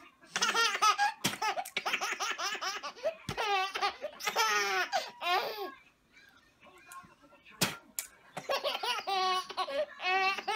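A baby laughing in repeated high-pitched fits. About six seconds in there is a lull of a couple of seconds with two sharp clicks, and the laughing starts again near the end.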